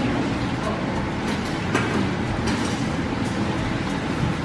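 Steady rushing background noise, like a fan or running machine, with no distinct events, under faint indistinct voice.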